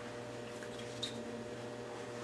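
Quiet room tone with a faint steady electrical hum, and one small click about a second in.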